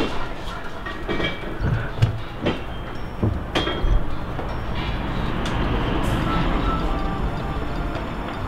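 Steel scaffolding parts clanking and clinking, a handful of separate metallic knocks with short ringing in the first half, followed by a steadier background noise.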